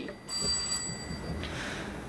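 A steady, high electronic ringing tone with several high pitches sounding together; the middle pitch stops about a second and a half in, and a lower one carries on to the end.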